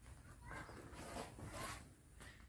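Faint rustling as a banana is handled, a few soft scrapes from about half a second in until near the end.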